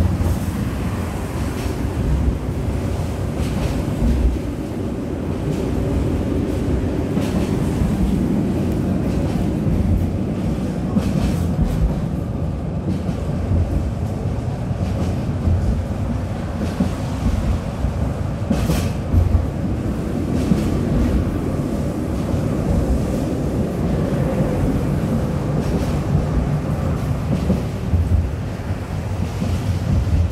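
Tram running along its track, heard from inside the passenger car: a steady low rumble of wheels and traction motors, with a few sharp clicks and knocks from the rails.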